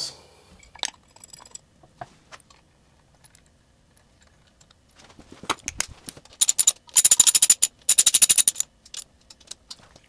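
Ratchet wrench clicking in two quick runs of rapid, even clicks, tightening the bolts of a new alternator mounting bracket on the engine block. Before them, a few scattered light clicks and knocks of handled tools and hardware.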